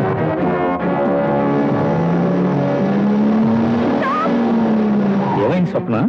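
Dramatic film background score: sustained orchestral chords with a low, brass-like note held through the middle. A woman's voice comes in near the end.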